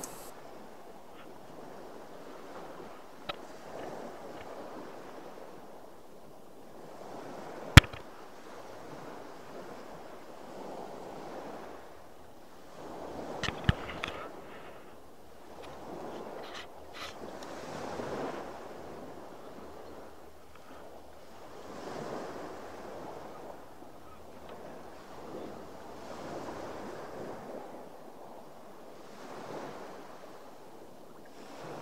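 Sea waves washing against a boat, swelling and fading every few seconds, with wind on the microphone. A single sharp knock about eight seconds in, and a brief cluster of clicks a few seconds later.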